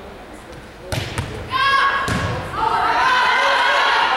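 A volleyball struck on the serve with a sharp smack about a second in, a second hit soon after, then players and spectators shouting and cheering loudly through the rally.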